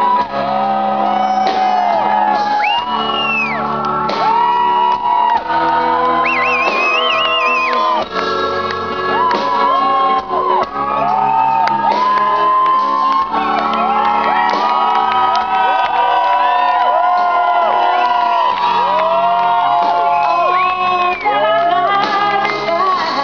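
Live pop-rock band playing at full volume, with electric guitar, drums and keyboard, and voices singing, shouting and whooping over it.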